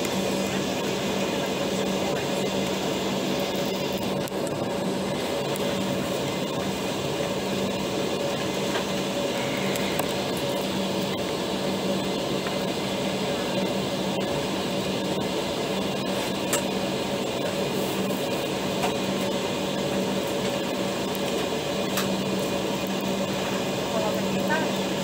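Steady cabin noise inside an Embraer ERJ 195 airliner taxiing: its General Electric CF34 turbofans at low thrust and the air-conditioning, an even rush with a steady low hum and a fainter higher tone.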